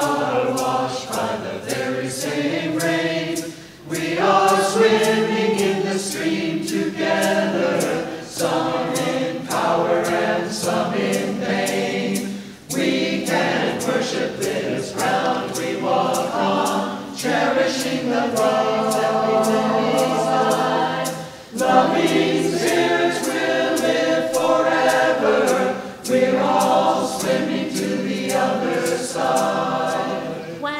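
Mixed choir of men's and women's voices singing together in long sustained phrases, with brief breaks between phrases a few times.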